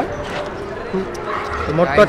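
Indistinct voices of several people talking at once, quieter than the speech on either side, with clearer talk picking up near the end.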